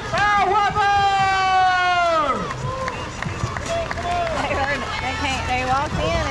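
A voice calling out one long drawn-out word that slides down in pitch at the end, followed by scattered spectator voices.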